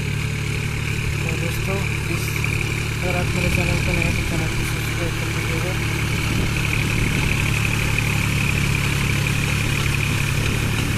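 New Holland 4710 Excel 4WD tractor's three-cylinder diesel engine running steadily under load, pulling a rotary tiller through flooded paddy mud.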